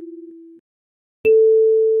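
Kalimba notes: the last ring of a lower tine (E4) fades out, and about a second in an A4 tine is plucked and rings on as a clear, pure tone that slowly decays.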